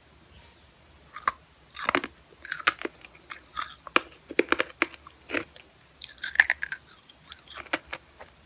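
Close-up mouth sounds of a lollipop's hard candy being bitten and chewed: irregular crunches and wet clicks, starting about a second in.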